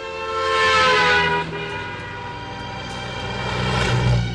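A truck's horn held as it passes, its chord of tones dipping slightly in pitch as it goes by, over road traffic noise. The traffic noise swells again near the end.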